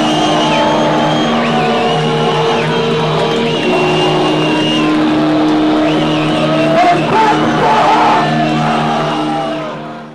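Live heavy metal band ending a song: distorted electric guitars hold long notes that change every second or two, with high whistles and shouts from the crowd over them. The sound fades out near the end.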